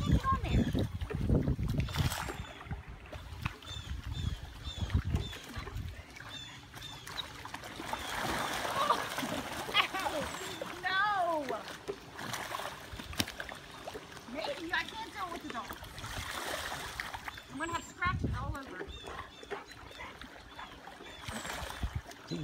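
Pool water splashing and sloshing as a dog paddles and a foam float is pushed through the water; the splashing comes and goes, strongest in the first few seconds and again near the end.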